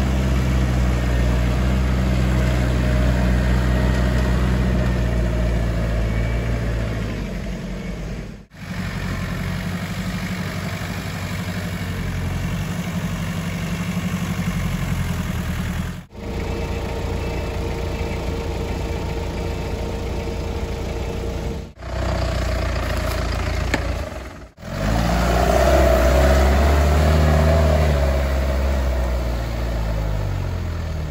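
Off-road 4x4's engine running and revving, its pitch shifting up and down, with four abrupt breaks where the sound cuts off and resumes.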